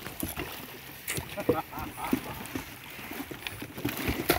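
Faint, indistinct voices and a few light knocks over a soft hiss of wind and shallow water.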